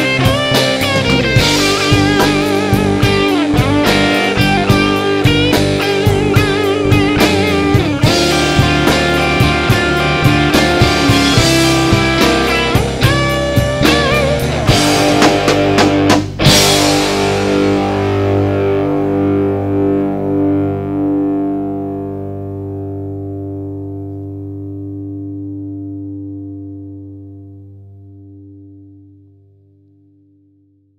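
Rock band playing with guitar and drum kit, then stopping on a final chord about sixteen seconds in. The chord rings out and slowly fades away.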